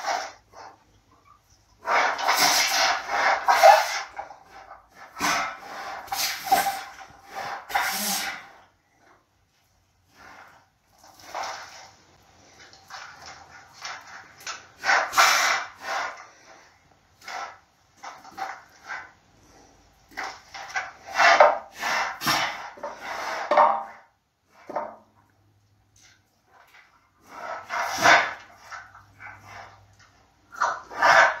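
A sloth bear working at hanging wooden enrichment feeders: snuffling at them and knocking the wooden pieces about, in four bouts of a few seconds each with quiet pauses between.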